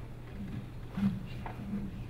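A man's low voice making about three short hesitant sounds into a microphone, the middle one loudest, over a steady low hum from the sound system.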